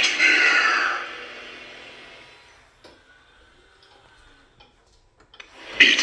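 Home Depot 8 ft Boogeyman animatronic's speaker audio, a voice and sound effect, dying away over the first two seconds. Near quiet follows, with a few faint clicks, then the prop's audio starts again abruptly near the end.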